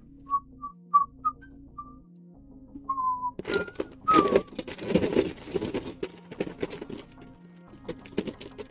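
A man whistling a few short, quick notes and a falling glide, then rustling and clattering as he rummages through bags and loose printed parts, over quiet background music.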